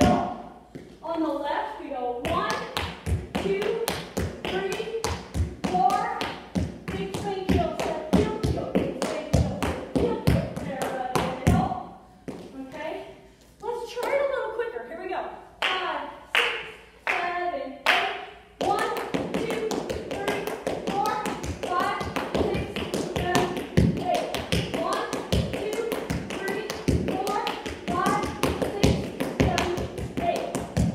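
Tap shoes on a hard studio floor dancing a repeated tap step of paradiddles and dig, bank, heel, step, heel combinations: rapid, uneven runs of clicks with brief breaks near 12 and 18 seconds. A woman's voice sounds along with the steps without clear words.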